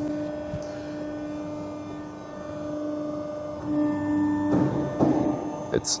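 Steady electric hum of a hydraulic plate roll's drive running. It swells briefly about two thirds of the way in, as the right roll is driven to its set position and stops.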